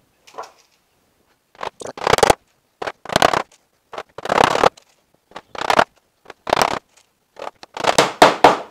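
Hammer driving one-inch nails through the tin sheet of a wooden hive roof into the timber, in a series of loud strikes grouped in short clusters about once a second, starting about a second and a half in.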